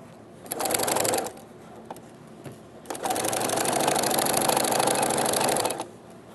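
Singer domestic sewing machine stitching through denim: a short run of about a second, a pause, then a steady run of about three seconds, with fast even needle strokes.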